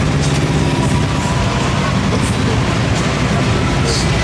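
Pickup truck engines idling in a steady low rumble, with a few faint brief crackles over it.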